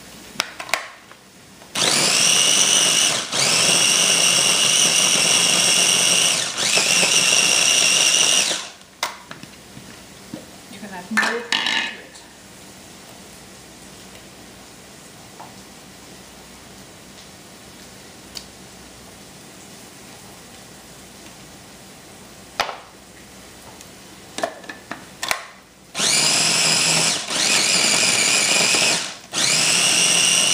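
Small red electric food processor pureeing tomatoes and green chillies: a high motor whine over steady grinding, run for about seven seconds with two brief breaks. After a quieter stretch it runs again near the end in short pulses.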